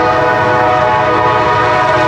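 Diesel locomotive's multi-chime air horn sounding one long, steady, loud chord as the train approaches a grade crossing.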